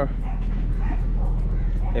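A dog barking in the background over faint voices, with a steady low hum underneath.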